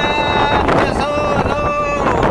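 A man singing two long held notes, one at the start and another from about a second in, over strummed nylon-string acoustic guitar.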